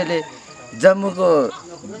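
A man's voice speaking in short bursts with a pause between them, over a steady high-pitched chirring of crickets or similar insects.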